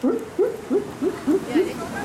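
One person's voice making a quick run of about seven short hoots, each rising in pitch, roughly three or four a second.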